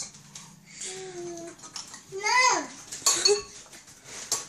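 A spoon clinking against a cereal bowl several times, the loudest clinks about three seconds in, with a toddler's two short babbled vocalizations in between.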